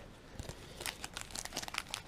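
Plastic wrapper of a Topps baseball card pack crinkling faintly as it is handled, in scattered light crackles that start about half a second in and grow busier.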